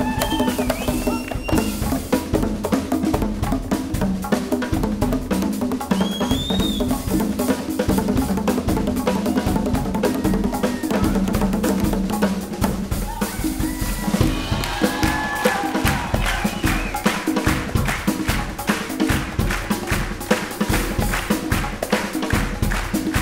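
Live percussion trio playing a dense, fast rhythm on drum kit with cymbals, hand drums and djembes. A low held tone runs under the first half and stops about twelve seconds in; after that the strokes settle into a steadier, even pulse of about four to five a second.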